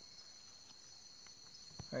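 Night insects calling in the forest: a steady, even high-pitched drone, with a still higher note coming and going about once a second. A faint click comes just before a man's voice begins at the very end.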